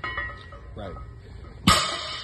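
A single short, loud, sharp burst near the end, over faint steady background music, with one brief spoken word before it.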